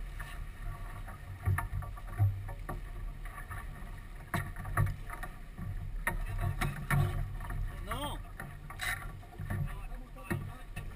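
Wind and water noise on a sailboat under way: a steady low rumble, broken by scattered knocks and clicks as the crew moves about the deck and handles gear. A brief rising squeak comes about eight seconds in.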